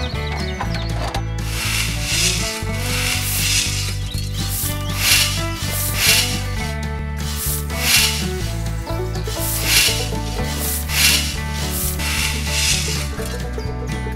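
A small metal digging tool scraping and digging into sand, about one stroke a second. Under it runs background music with a steady bass line.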